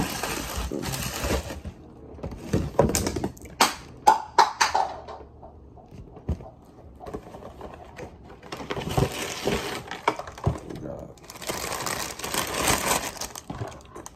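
Plastic cereal-bag liners crinkling and cereal boxes rustling as they are handled, in several spells. A cluster of sharp clicks and rattles of dry cereal pieces falls in between.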